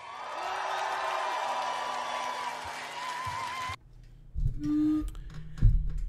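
Live concert crowd cheering and applauding as a rock song ends, with a faint lingering note, cut off suddenly about four seconds in. A short low hum follows about a second later.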